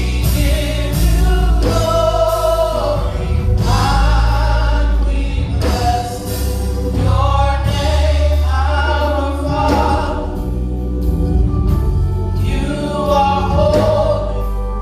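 A small vocal group singing a gospel song into microphones, voices in harmony, over an amplified accompaniment with a heavy bass line that changes note every second or two.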